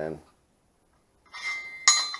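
A loose, unwelded flat steel spacer piece handled against a welded steel bracket: a brief scrape, then one sharp metallic clink with a short ring near the end.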